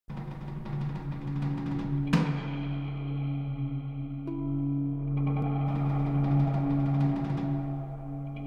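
Synthesised music, plausibly played on an Akai EWI5000 electronic wind instrument: two low notes held steadily under a patter of drum-like hits. A loud strike about two seconds in rings away slowly, and a new tone comes in about four seconds in.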